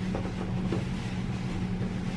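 A steady low hum, with a few faint soft clicks in the first second.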